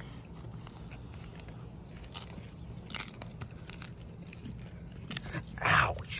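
Sulcata tortoise biting into a fresh cactus pad held in a hand: a few scattered crisp crunches, with the loudest bites coming near the end.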